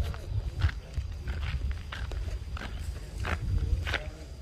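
Footsteps crunching on dirt and gravel at an irregular walking pace, over a low rumble of wind on the microphone.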